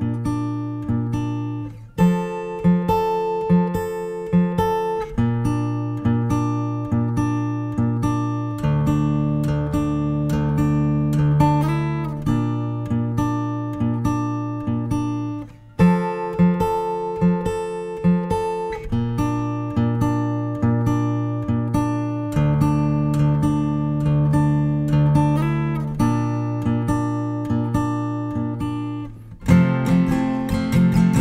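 Steel-string acoustic guitar fingerpicked with a thumbpick: a repeating arpeggio of single notes over ringing low bass notes, broken by a short pause about halfway through and again near the end, where strummed chords begin.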